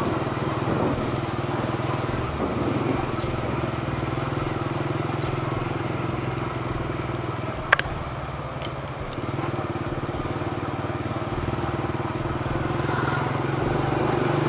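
Small motorbike engine running steadily under way, heard from on the bike. A single sharp click comes about halfway through, and the engine note dips briefly right after before picking up again.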